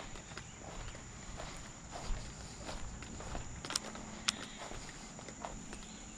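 Footsteps walking across a grass lawn at a steady pace, about one step every two-thirds of a second, with two sharp clicks about four seconds in.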